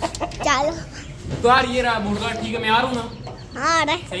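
Chickens clucking in a wire-mesh coop: about five separate calls, each bending up and down in pitch.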